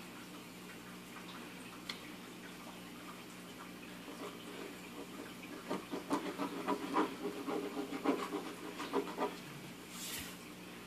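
Pen scribbling on a small paper notepad resting on a wooden table: a run of short, irregular strokes, several a second, that starts a little before halfway through.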